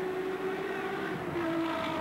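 Racing touring-car engines running as cars come round a tight street-circuit corner, a steady drone whose pitch dips slightly a little past the middle.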